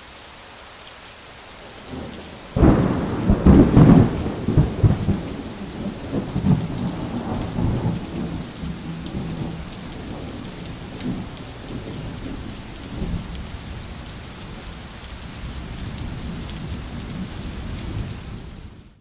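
Thunderstorm: steady rain, then a sudden loud thunderclap about two and a half seconds in that rolls on and slowly dies away into the rain.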